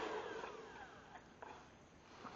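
Hair dryer switched off, its motor whine falling in pitch and fading away over about the first second as it spins down. A couple of faint clicks follow.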